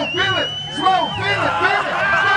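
A group of people shouting and yelling together, with one long high-pitched cry held through about the first second.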